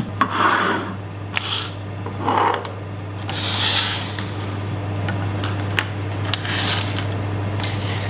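Small lab apparatus being slid across and set down on a benchtop: several short rubbing, scraping sounds and a few light clicks, over a steady low hum.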